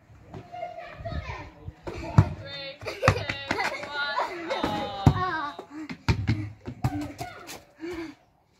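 Children shouting and calling out as they play, with a basketball bouncing with sharp thuds several times.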